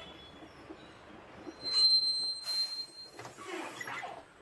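A city bus pulling in to a stop: its brakes give a loud, steady, high-pitched squeal for about a second and a half, overlapped by a hiss that dies away near the end.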